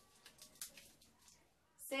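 Mostly quiet room with faint light handling ticks. A woman's voice starts just before the end.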